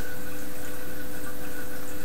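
Steady background hiss with a faint low hum and no other events: constant room or equipment noise.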